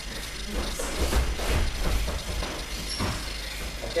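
Bare feet scuffing and slapping on grappling mats and heavy cotton jackets rustling as training partners grip and move, a quick irregular run of short scuffs and thuds over a low room rumble.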